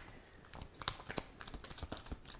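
Tarot cards being shuffled by hand: soft, irregular flicks and rustles of the deck, a handful of separate clicks over the two seconds.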